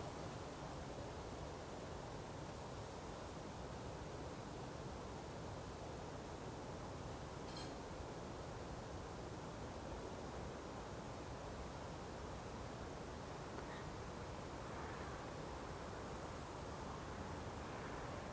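Faint, steady background hiss with no distinct source, and one faint tick about halfway through.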